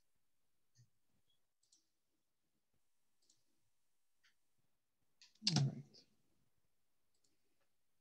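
Faint, scattered computer-mouse clicks. About five and a half seconds in there is a brief, louder vocal sound from a person, with no words in it.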